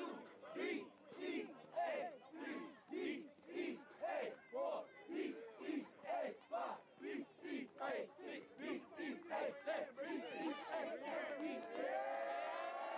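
A group of voices chanting in a steady rhythm, nearly two shouts a second, in a team celebration chant. Near the end a long held note rises in and takes over.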